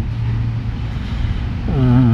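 Steady low rumble with a constant hum, like an engine running nearby; a man's voice starts again near the end.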